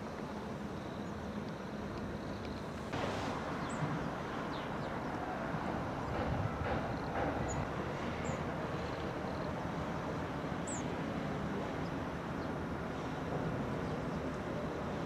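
Steady outdoor rumble of distant vehicle traffic across the river, with a few faint, short, high chirps scattered through it; the rumble steps up slightly about three seconds in.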